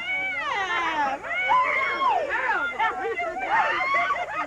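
Several people's excited voices overlapping: high squeals and drawn-out exclamations that slide up and down in pitch, without clear words, as they greet and hug.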